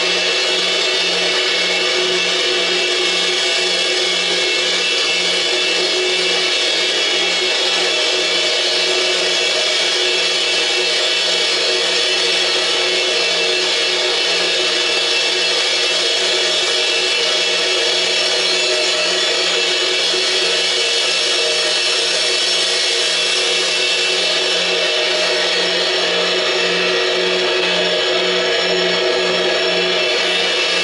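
Experimental noise music: a dense, steady wash of cymbals played with mallets, layered with an electronic drone of many held tones and a low tone pulsing steadily underneath.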